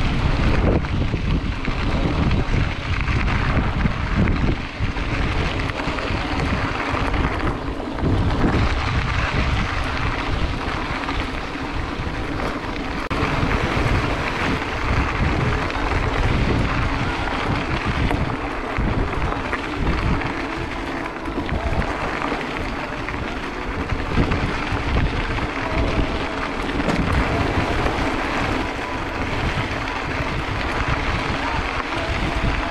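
Wind buffeting the microphone of a camera on a moving mountain bike, a steady loud rushing with gusty low thumps, mixed with the tyres rolling over a dirt and gravel track.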